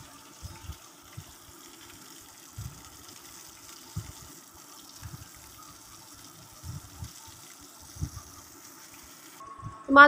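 Hot mustard oil sizzling steadily in a kadai after the fried fish pieces are lifted out, with a few soft low knocks from the wooden spatula and pan.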